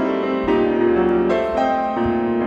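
Grand piano playing a contemporary piece: layered, sustained chords, with new chords struck about half a second in and again just past the middle, a deep bass note entering with the first of them.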